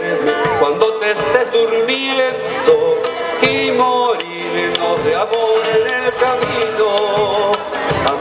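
Live Argentine folk music: an acoustic guitar played together with a bombo legüero, the large hide-headed drum, beaten with sticks.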